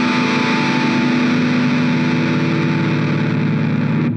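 A rock band holding one sustained final chord, with distorted electric guitars ringing steadily, which breaks off at the very end.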